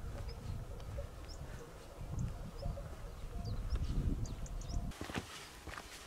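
Wind buffeting the microphone, with a few short high bird chirps over it. About five seconds in it gives way to footsteps on a stony trail.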